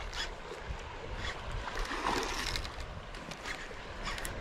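Baitcasting reel being cranked while a hooked fish is reeled in, over steady outdoor wind and water noise, with a brief louder swell about two seconds in.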